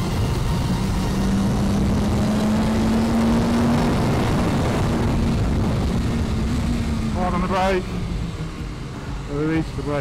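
BMW S1000RR inline-four engine heard from onboard under heavy wind rush. It pulls up through the revs for the first few seconds, then eases off and drops away near the end as the throttle closes for braking into a bend. The rider's voice comes in briefly near the end.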